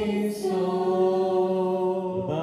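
Syriac Orthodox liturgical chant, with voices holding long, steady notes. There is a short hiss about a third of a second in, and the chant moves to a new note at about half a second.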